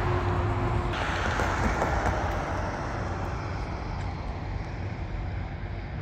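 Road traffic: a passing vehicle's rushing noise swells about a second in and slowly fades away, over a steady low rumble.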